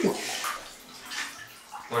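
Water sloshing in a bathtub filled for an ice bath as someone moves about in it.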